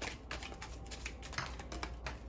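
Light, irregular clicks and taps, a few per second, over a low steady hum: small hard objects handled or tapped on a tabletop.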